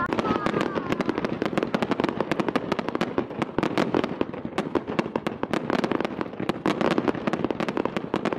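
Arena crowd applauding: a dense, steady patter of many hands clapping.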